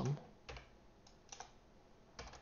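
A few separate keystrokes on a computer keyboard, short light clicks spaced out over a quiet room.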